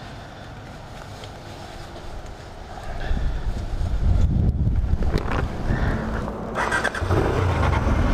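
Honda Hornet inline-four motorcycle engine, quiet at first, then a low running rumble that starts about three seconds in and carries on.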